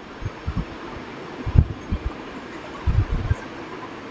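Steady background hiss of room noise during a pause in speech, with a few soft low bumps, the strongest about a second and a half in and again near three seconds.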